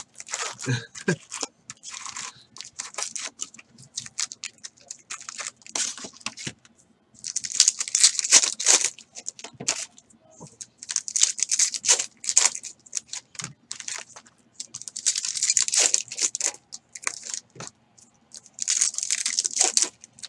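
Foil wrappers of trading-card packs being torn open and crinkled, in several separate bursts, with short clicks of cards being handled in between.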